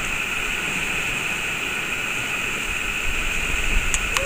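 Steady hiss of sea waves washing over a rocky shore, with wind buffeting the microphone near the end and a short click just before it ends.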